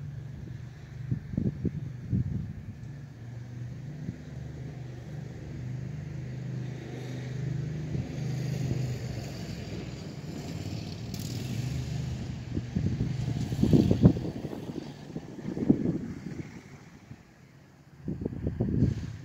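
Landmaster LM650 UTV's 653 cc engine running steadily at idle, with a few louder low bursts about three-quarters of the way through.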